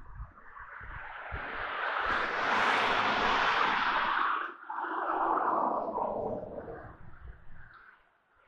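Road traffic going past: a vehicle's tyre and engine noise swells and fades, then a second pass follows with its pitch falling as it goes by.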